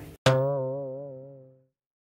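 A single low twanging 'boing' sound effect: one sharp pluck whose pitch wobbles as it dies away over about a second and a half, then dead silence.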